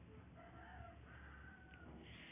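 Faint, distant rooster crowing: one drawn-out call that steps up in pitch about a second in, over low steady room hum.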